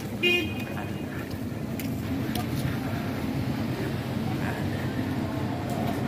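Busy street ambience of steady traffic and crowd noise, with one short horn toot just after the start.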